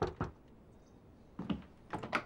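A few short, sharp clicks and knocks: a quick cluster at the start, then two more about a second and a half in, with quiet between.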